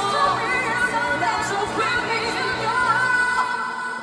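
A woman singing a pop song into a microphone over instrumental backing, from a stage performance.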